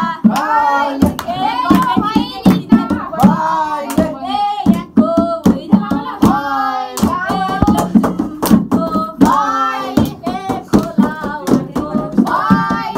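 A group of people singing together, with steady rhythmic hand clapping.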